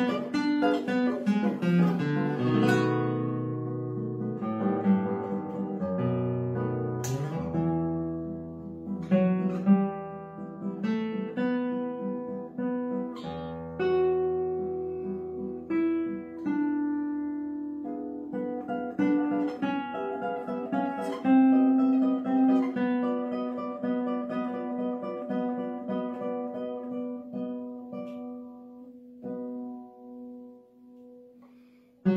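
Classical guitar played solo, fingerpicked with nylon strings: a flowing run of plucked notes and chords over a low bass line, ending on a chord that rings out and fades away near the end.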